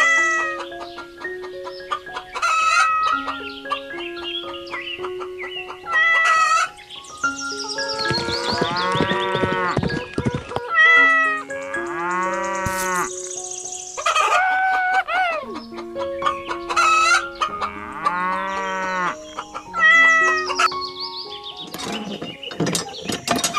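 Cows mooing several times, with a long low moo about 8 s in and more near 12 and 18 s, and shorter, higher fowl calls in between, over a light background music melody.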